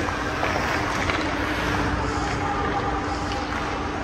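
Steady ice-arena hum with hockey skate blades scraping and gliding on the ice as a skater carries the puck in on the goalie, with a few faint clicks.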